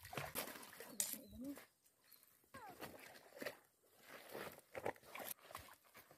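A dog wading in shallow river water, with faint, intermittent sloshing steps and a couple of brief gliding calls in the first few seconds.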